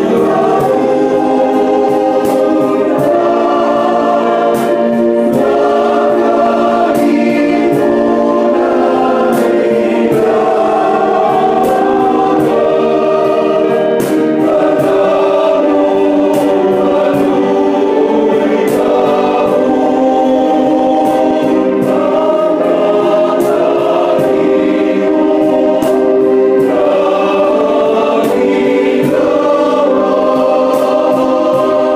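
Men's choir singing gozos, a devotional hymn, a cappella in several parts, with held chords that change every second or so at a steady level.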